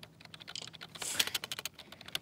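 Typing on a computer keyboard: a scattered run of light key clicks, with a short soft hiss about a second in.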